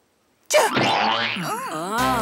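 Cartoon-style boing sound effect: a pitched tone that wobbles and slides up and down in waves, starting about half a second in after a moment of dead silence.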